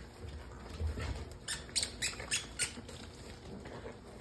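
French bulldog puppies at play: soft pattering thumps, then a quick run of about five short, high squeaks about a second and a half in.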